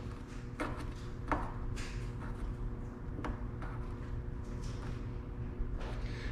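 Faint, irregular clicks from a coilover strut's damping adjuster being turned clockwise to its stiffest setting, over a steady background hum.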